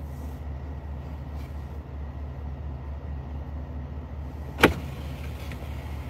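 Steady low hum of a vehicle's running engine heard from inside the cab, with one sharp click about four and a half seconds in.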